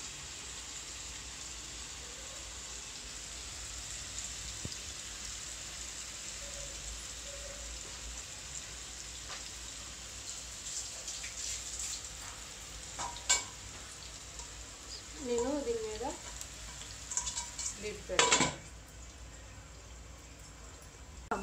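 Fish steaks coated in masala shallow-frying in oil in a pan, a steady sizzle. A few metallic clicks and clanks break in during the second half, the loudest near the end.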